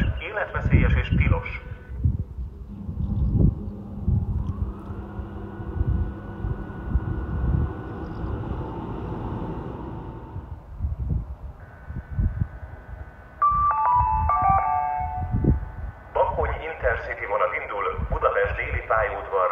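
Station public-address announcement over a platform horn loudspeaker, its voice stopping about a second and a half in. Several seconds of low rumble with a faint steady hum follow. Near the end a multi-tone PA chime plays, stepping down in pitch, and the next announcement begins.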